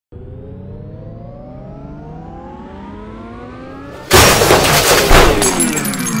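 Logo intro sound effect: a stack of tones rises slowly for about four seconds, then breaks into a sudden, much louder crash, with a second hit about a second later.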